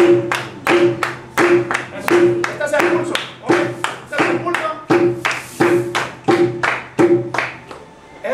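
A cumbia hand drum plays a steady ringing stroke about every 0.7 s. Hand claps alternate with it, so strokes come about three a second, marking strong and weak beats of the cumbia rhythm. The pattern stops just before the end.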